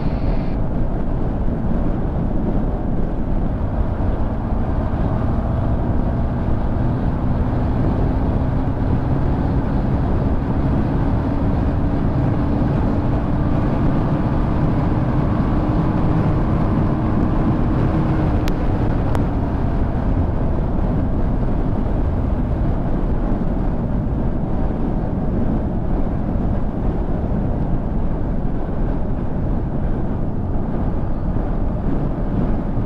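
Motorcycle cruising at expressway speed: steady wind and road rush over the engine's hum, whose pitch climbs slowly through the middle stretch before fading back into the noise.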